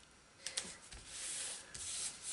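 Fingers rubbing a paper sticker down onto a planner page: a couple of light taps about half a second in, then two dry swishes of skin sliding over paper.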